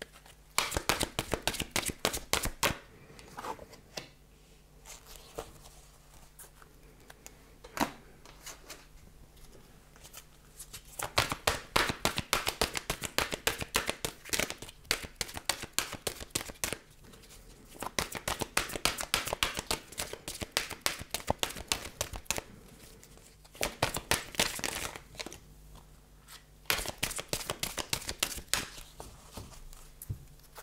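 A deck of angel-message oracle cards being shuffled by hand: bursts of rapid card flicks and slaps lasting a few seconds each, with short pauses between.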